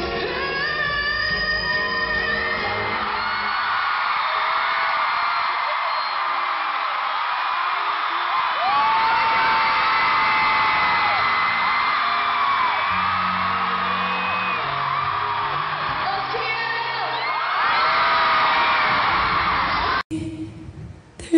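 Live pop concert sound: a woman singing over band music, with a large crowd screaming and cheering almost throughout, heard in a dull, low-fidelity recording.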